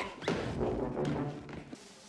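Film soundtrack playing in a room: a sudden thud, a man's cackling laugh, and music that fades toward the end.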